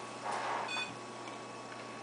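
A short, high electronic beep about three-quarters of a second in, with a brief soft rustle around it, over a faint steady electrical hum.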